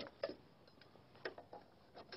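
Quiet pause: faint room tone with two faint short clicks, about a quarter second and just over a second in.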